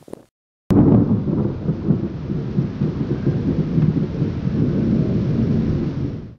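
A loud, steady, low rumbling noise that cuts in abruptly less than a second in, after a short dead gap, with a sharp click at its onset.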